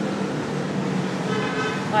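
Steady background road-traffic noise with a low hum, and a brief horn toot from about a second and a half in.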